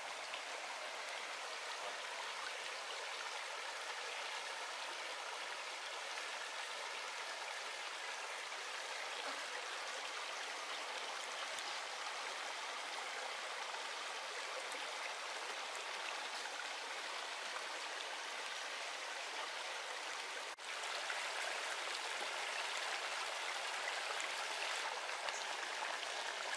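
Steady rushing of a shallow stream running over rocks. About two-thirds of the way through the sound breaks off for an instant and comes back a little louder.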